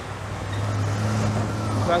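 A large UPS delivery truck driving past close by, its engine a steady low hum, over street traffic noise.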